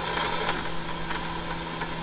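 Steady mechanical hum of a simulated conveyor belt running in the Factory I.O. simulation, with a few faint clicks.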